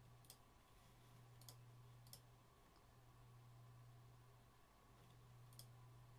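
Near silence over a steady low hum, with four faint computer mouse clicks: three in the first couple of seconds and one near the end.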